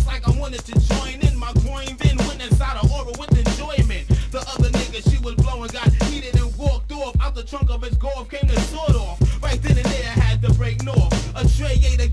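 1990s boom-bap hip hop track from a vinyl record: rapping over a steady drum beat with a heavy low kick, and a deep bass line that comes in near the end.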